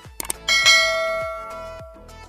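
Two quick clicks, then a bright notification-bell ding sound effect that rings and fades over about a second and a half, over background music.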